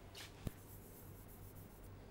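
Chalk on a blackboard: a brief faint scrape, then one sharp tap about half a second in, over a low steady room hum.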